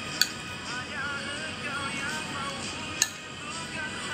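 Metal spoon clinking twice against a ceramic plate, about three seconds apart, over faint background music.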